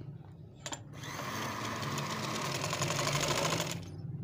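Sewing machine running at a steady speed, stitching a line of edge stitching through the fabric and lace. It starts about a second in, after a single click, and stops abruptly just before the end.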